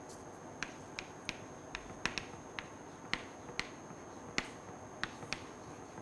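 Chalk clicking against a blackboard while writing: about a dozen short, sharp, irregularly spaced taps as the strokes are made.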